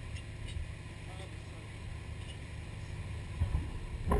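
Dive boat under way, its engine running as a steady low drone, with a couple of low thumps near the end.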